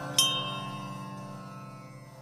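A small metal chime struck once, just after the start, ringing out over a low sustained drone, the whole fading away at the close of the music.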